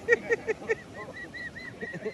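A man laughing: a quick string of short, high 'ha' syllables, about six a second, thinning out into fainter, higher squeaky giggles in the second half.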